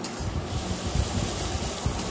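Chicken pieces frying in a steel kadai with a steady sizzling hiss, while a metal spatula stirs them, with some low knocks.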